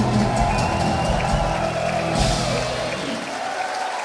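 A rock band's final notes ring out as a concert crowd applauds and cheers. The band's low sound dies away about three seconds in, leaving the applause and cheering.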